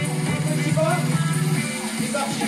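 Upbeat electronic workout music; the steady beat drops out for a moment, leaving a held low bass note with a short sliding melodic line over it.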